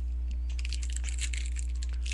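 Crinkling and crackling of a trading-card pack's wrapper being handled and torn open, a quick run of small crackles starting about half a second in, over a steady low hum.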